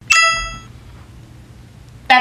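A single bright ding, an achievement-unlocked notification chime sound effect, ringing out and fading within about half a second, followed by faint room hum.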